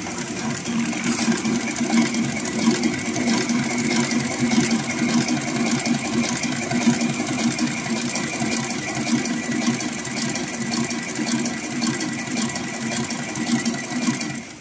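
HighTex 204-102MD twin-needle heavy-duty sewing machine running steadily, sewing a decorative seam in thick thread with a fast, even stitching rhythm.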